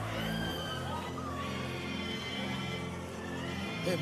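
Soft sustained background music of held low chords, with faint wavering voices above it.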